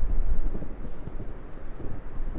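Wind buffeting the microphone, an uneven low rumble that is strongest in the first half second and then eases.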